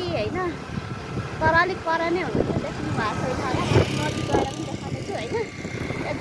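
A woman talking, with a rushing noise behind her voice that swells about three to four seconds in.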